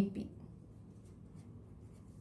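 Faint scratching of a pen writing on paper.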